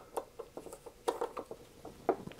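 Small screwdriver working the 4-40 cover screws out of the metal case of an HP 355A attenuator: a few light metal-on-metal clicks and scrapes, bunched about a second in.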